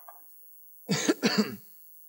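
A man coughing twice in quick succession into a microphone, about a second in.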